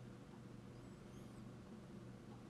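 Near silence: faint room tone with a steady low hum, and a few faint high chirps about a second in.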